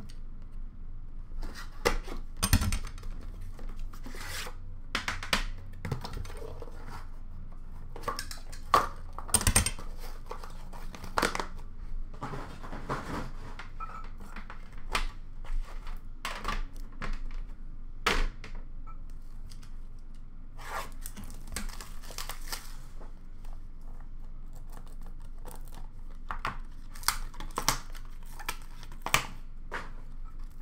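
A box of trading cards being opened by hand, with its cardboard packaging and pack wrapper tearing and rustling. Many short sharp tears, crinkles and small knocks come one after another, the loudest about a third of the way in.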